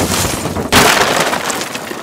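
Road debris striking a car windshield and the glass cracking. The sound is a dense, noisy crash with a second loud hit under a second in.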